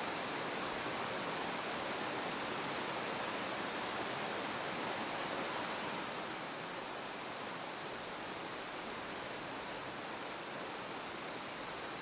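Steady rush of a river's natural cascades pouring over rock ledges into pools, a little quieter from about six seconds in.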